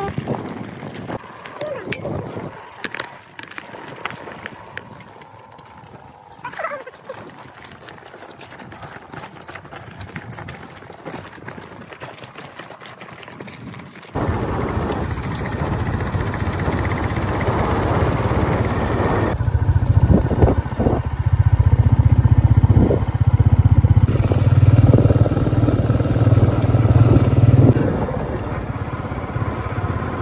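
Royal Enfield motorcycle running as it is ridden, with a steady low engine drone. It is quiet for the first half, then much louder from about halfway, and eases off a little near the end.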